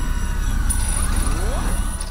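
Produced outro sound design: a deep, steady rumble with a thin high tone coming in just under a second in, and a sweep rising in pitch about a second and a half in.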